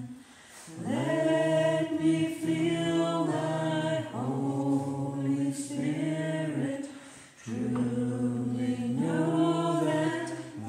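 Congregation singing a slow hymn unaccompanied, the voices holding long notes in drawn-out phrases, with short breaks between phrases just after the start and again about seven seconds in.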